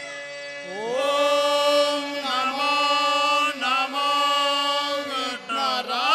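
Music: a voice sings a slow, chant-like devotional melody over a steady instrumental drone. The voice enters about a second in with held, gliding notes and breaks off briefly a few times.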